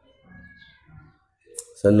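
A quiet pause with faint low sounds, then one short, sharp click about one and a half seconds in, just before a man's voice starts speaking.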